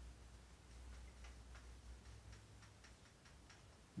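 Faint, irregular taps and short squeaks of a marker writing on a whiteboard, over a low steady hum.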